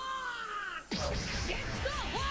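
Anime voice acting: a long, drawn-out shout of the attack call 'Gomu Gomu no...' ('Gum Gum...') over the episode's music. It cuts off suddenly just under a second in, and a louder stretch of music and effects follows as the attack builds.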